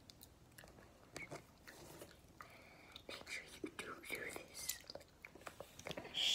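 Soft mouth noises close to the microphone: scattered clicks and smacks of chewing, with some whispering in the second half.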